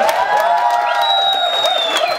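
Concert audience applauding and cheering with whoops at the end of a song, with a high sustained whistle from about a second in.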